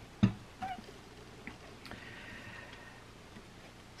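A BenQ Genie desk lamp being put in place: one sharp knock just after the start, then a few faint clicks of handling.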